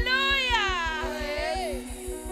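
A woman's voice singing one long, high note into a microphone that slides downward in pitch and fades near the end, over sustained keyboard chords and a steady low beat from the band.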